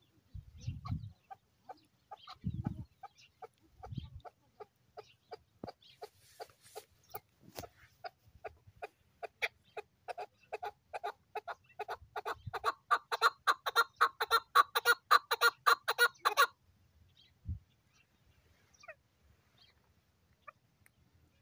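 Chukar partridge calling: a series of clucking notes that speeds up and grows louder into a rapid chatter of about four or five notes a second, then stops abruptly about sixteen seconds in.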